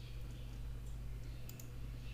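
A few computer mouse clicks, the sharpest pair about one and a half seconds in, as the marquee tool's menu is opened in Photoshop, over a steady low hum.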